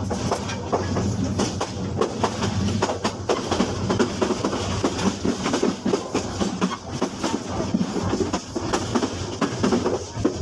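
Dubbed-in train sound effect: a train running on rails, a steady rumble with many irregular wheel clicks. It is a stock recording laid over the picture, not the sound of the train in view.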